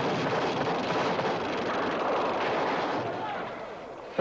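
Continuous din of battle sound, the rumble of explosions from a war-film soundtrack, fading away over the last second.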